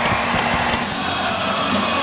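Steady hockey-arena din of crowd noise with music in it, right after a goal.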